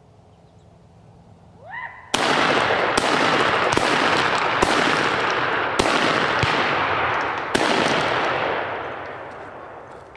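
A rapid, uneven series of about six gunshots from a hunter's long gun, fired at a running buck. The shots start about two seconds in, the echo carries on between them, and it fades away near the end.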